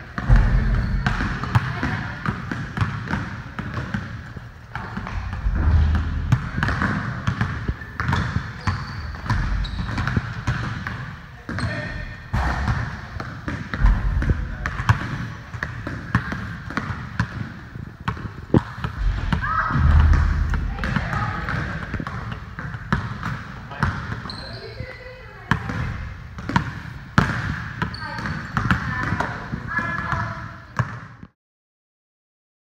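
Basketballs being dribbled on a hard gym floor, a steady run of bounces throughout, with indistinct voices underneath.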